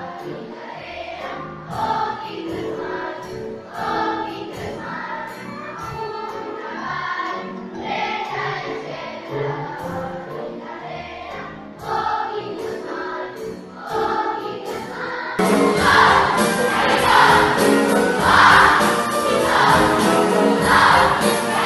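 A large children's choir singing in unison with an instrumental ensemble, in a steady rhythm. About fifteen seconds in, the sound jumps abruptly louder and brighter.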